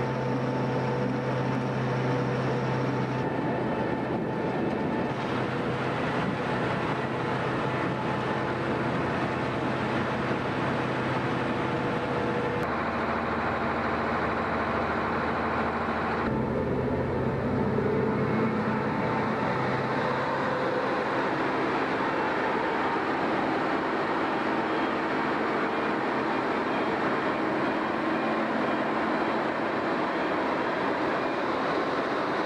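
Vervaet Beet Eater 925 self-propelled sugar beet harvester working: a steady engine and machinery drone that changes abruptly in tone about 3, 12 and 16 seconds in.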